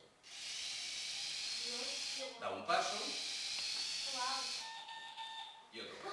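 A Bee-Bot floor robot's small gear motors whirring as it drives across the floor, in two runs of about two seconds each with a brief stop between them. Children's voices are heard during and after the stop.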